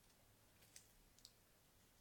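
Near silence, with a few faint clicks of a crochet hook against the pegs of a round knitting loom as a loop of wool is lifted over a peg.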